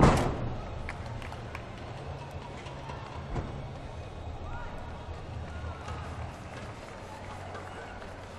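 A gymnast landing a tumbling pass on a sprung competition floor: one loud thud that rings through the arena. A softer thump follows a few seconds later as he drops to the floor, over the steady murmur of the hall.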